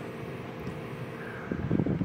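Wind buffeting a phone microphone: a steady rush with a faint steady hum, gusting more roughly near the end.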